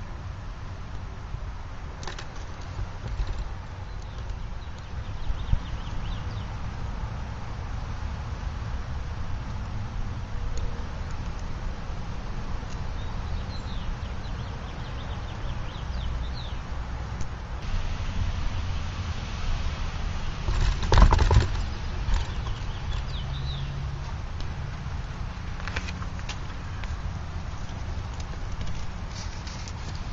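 Small wood-pellet gasifier can stove burning in light rain: a steady low rumble with scattered light ticks and taps, and one louder knock about 21 seconds in.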